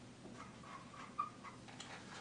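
Faint squeaks of a dry-erase marker on a whiteboard as a dot is drawn, with a light tick of the marker tip a little after a second in.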